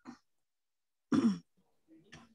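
A person clearing their throat once, short and loud, about a second in, heard over a video-call microphone, after a faint brief sound at the start.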